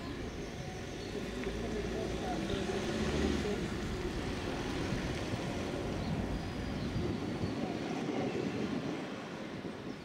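Street sounds: a vehicle's low rumble swells over the first few seconds and dies away before the end, with voices mixed in.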